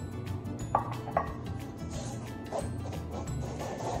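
Background music with a steady beat, over which a wooden spoon knocks against a metal mixing bowl three times, twice in quick succession about a second in and once more later.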